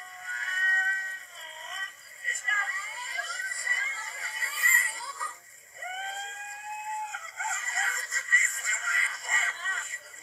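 Cartoon voices and music from two animated-film clips playing at once through laptop speakers, one of them played backwards. The sound is thin, with no bass, and holds a few long held notes.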